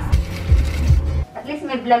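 Low road rumble inside a car's cabin, with a few knocks of the handheld phone; it cuts off abruptly a little over a second in, giving way to voices in a room.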